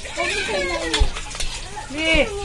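Voices talking in the background, children's voices among them, with one sharp knock about a second in.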